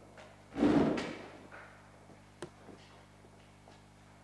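A single loud thump with a short rustling tail about half a second in, then one sharp click about two and a half seconds in.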